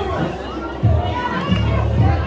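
Children's and spectators' voices calling out across a football pitch, several at once, with low rumbling bursts about a second in and again near the end.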